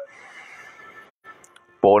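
A short gap in a fast, loud spoken prayer: a faint breathy hiss, then the voice starts again near the end.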